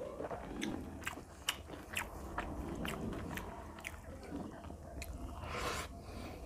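A person chewing a mouthful of rice and fish curry close to the microphone, with many sharp mouth clicks and smacks. Near the end there is a short rustle.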